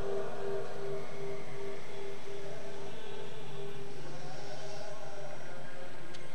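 Background hum and noise of a public-address system, with a steady tone that fades about two-thirds of the way through.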